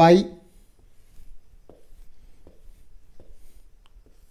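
Marker pen drawing lines on a whiteboard: a few faint, short strokes.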